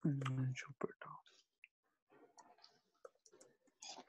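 A brief murmur from a voice lasting about a second at the start, then a few faint, scattered clicks.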